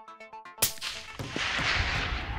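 A single rifle shot from a .22-250 at a fox: one sharp crack about half a second in, followed by about a second of noise that trails off.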